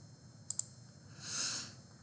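Two quick computer-mouse clicks close together about half a second in, then a brief soft hiss of noise a second later.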